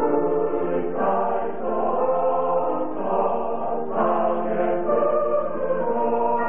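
A mixed choir singing a waltz in sustained chords, moving to a new chord about once a second.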